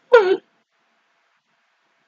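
A single brief, high-pitched vocal sound from a person's voice, well under half a second long, with its pitch dipping and then lifting slightly.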